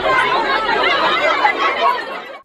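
A crowd of protesting villagers all talking at once: a loud jumble of overlapping voices with no single speaker standing out.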